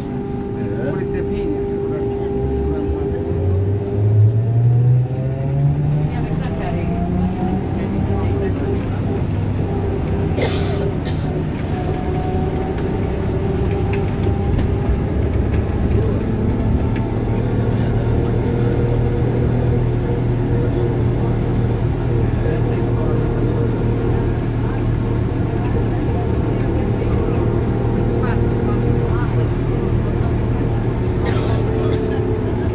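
Ikarus 415T trolleybus riding under way, heard from inside: the electric drive's whine climbs in pitch over several seconds as it accelerates, then settles into a steady hum over constant rattle and road noise.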